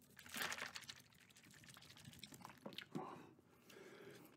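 Liquid sloshing in a plastic Gatorade Zero bottle as it is shaken: a short burst near the start, then faint scattered clicks.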